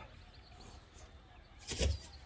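Faint background for most of the moment, then near the end one short thump with a scrape as a plywood sheet is pulled up out of gravel backfill.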